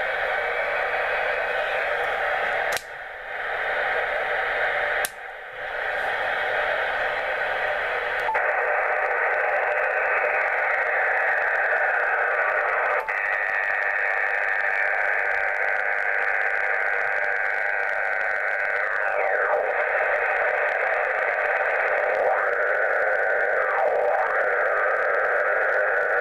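Yaesu FT-857D receiver audio in upper sideband: a steady hiss of band noise, cut out briefly twice in the first few seconds as the radio is changed over to 20 metres. After that the noise is fuller and steady, with a few tones sliding down in pitch as the dial is nudged. On 20 metres the noise, reading S7, is interference from a Jaycar MP3800 switch-mode power supply.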